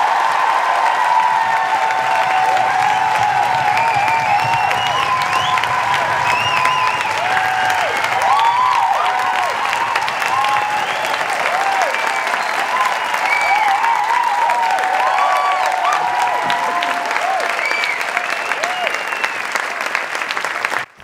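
Studio audience applauding steadily, with high voices whooping and cheering over the clapping.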